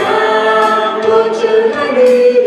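A worship team of two women and a man singing a Mandarin worship song together into microphones, with long held notes, over live band accompaniment with drum-kit strokes.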